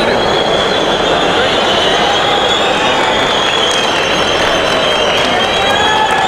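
Crowd applauding and cheering, with a high, slightly wavering whistle held over the noise.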